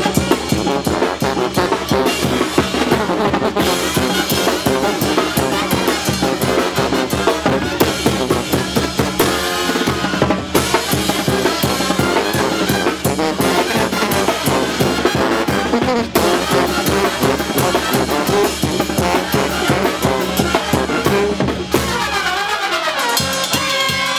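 Live Oaxacan-style brass band playing loudly: sousaphones, trumpets and trombones over a rhythmic beat on snare drum and cymbals.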